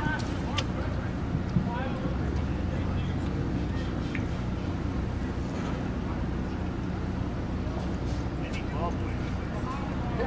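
Outdoor field ambience: a steady low rumble of wind on the microphone, with faint, distant shouts from players on the pitch.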